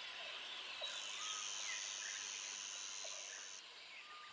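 Faint nature ambience of scattered bird chirps over a hiss of insects, with a steady high-pitched insect buzz from about a second in until shortly before the end.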